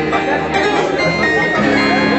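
A band playing a song live, loud, with amplified electric guitars carrying sustained notes over a full band.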